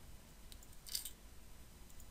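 A few faint computer mouse clicks: a light click about half a second in, a sharper double click about a second in, and another near the end.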